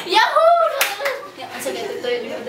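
A woman's excited voice without clear words, with a few hand claps about a second in.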